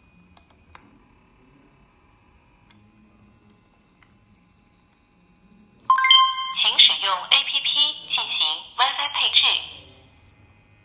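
A Wi-Fi security camera's small built-in speaker gives a short beep about six seconds in and then a spoken voice prompt, thin and telephone-like, as the camera restarts. Before it, only faint clicks.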